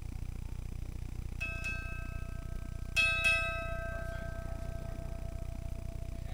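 Ship's bell struck in two pairs, two quick strokes and then two louder ones a second and a half later, the pattern of ship's time sounding four bells; the tone rings on for a few seconds after each pair, over a steady low rumble.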